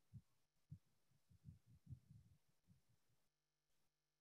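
Near silence, with faint low thuds at irregular intervals for the first three seconds or so.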